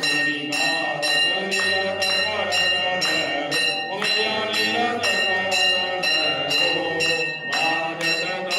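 Hanging brass temple bell rung over and over, about three strikes a second, its tone ringing on continuously, under a group of voices chanting.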